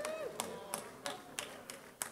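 About six sharp, irregularly spaced taps from people in the standing congregation.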